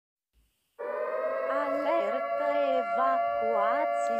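A steady electronic alarm tone on one held pitch, cutting in suddenly just under a second in and sounding on unchanged.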